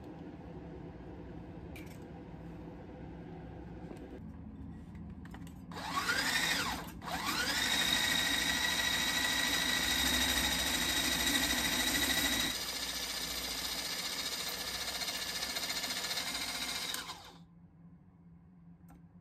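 Hand blender with a whisk attachment whipping egg whites into meringue in a glass bowl. The motor starts about six seconds in with a rising whine, stops for a moment, restarts and runs with a steady high whine, then runs more quietly for the last few seconds before cutting off near the end.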